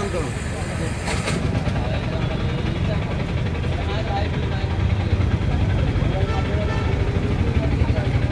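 A steady low engine-like rumble, with voices faintly in the background.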